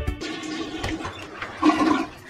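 Background music cuts off, then a toilet flushing, with a short louder sound near the end.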